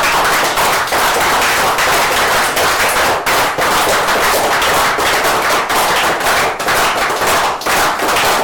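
Audience applauding loudly, many hand claps running together into a steady dense patter.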